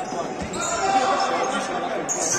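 Futsal ball kicked and bouncing on a hard gym floor, with a sharp thud about half a second in, among players' shouts and the echo of a large sports hall.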